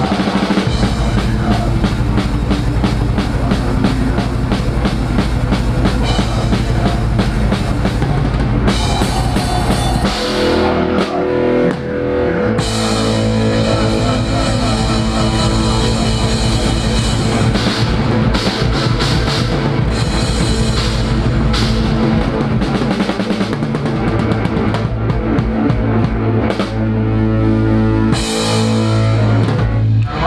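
Drum kit played hard within a full punk rock band: bass drum, snare and cymbals driving steadily over guitar and bass. About ten seconds in the drumming thins out for a couple of seconds before the full beat comes back.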